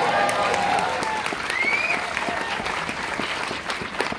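Theatre audience applauding, with voices cheering over the clapping and a high rising whoop about a second and a half in; the applause eases a little toward the end.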